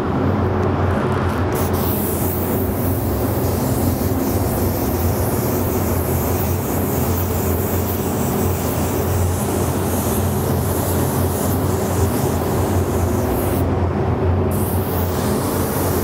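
Iwata LPH-80 spray gun hissing steadily as it lays a medium coat of water-based metallic white at about 16 psi. The hiss starts about a second and a half in and breaks off briefly near the end, over a steady low hum.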